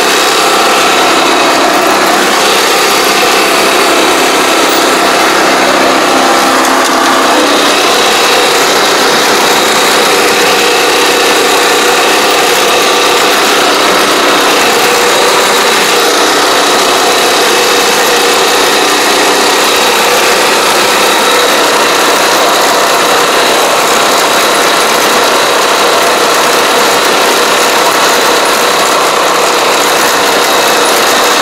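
Small engine of a walk-behind crawler pesticide sprayer running steadily while driving its spray pump. Its note changes slightly about seven and a half seconds in.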